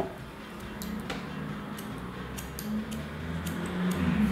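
Hair-cutting scissors snipping into the ends of a section of long hair, chopping (point-cutting) rather than making one straight cut: a run of short, sharp, irregularly spaced snips.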